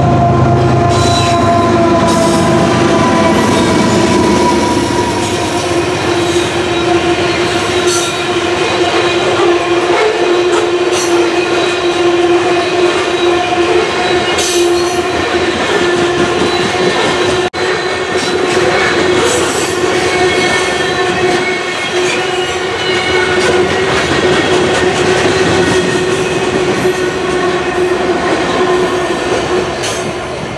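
A long BNSF freight train of covered hopper cars rolling past close by, loud and steady, with a continuous high wheel squeal and scattered clicks of wheels over the rail joints; a heavier rumble in the first few seconds.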